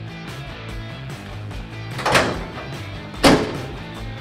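Chevy C10 pickup's steel tailgate slammed shut with a sharp bang just after three seconds in, preceded by a duller thump about two seconds in, over steady background music.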